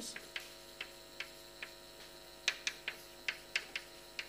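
Chalk tapping and clicking on a blackboard as a diagram is written: a string of sharp taps, spaced out at first and coming quicker in the second half, over a steady hum.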